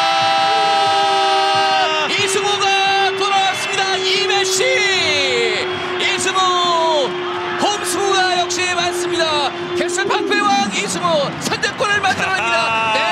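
Football commentator's long drawn-out goal shout, held on one pitch for several seconds and falling away about ten seconds in. Other excited shouts and stadium crowd noise run beneath it.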